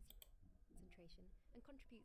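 Faint speech, with a few quick clicks just after the start.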